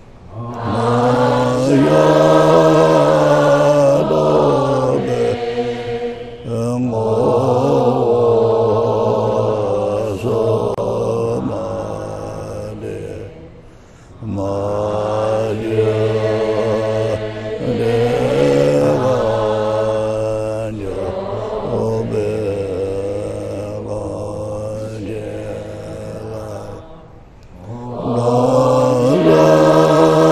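A Tibetan Buddhist prayer chanted in unison by a gathered assembly. It comes in long, melodic phrases, with short pauses for breath about fourteen and twenty-seven seconds in.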